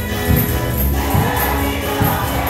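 Congregation singing a gospel hymn together with a band, over a steady low drum beat and regular high jingling ticks.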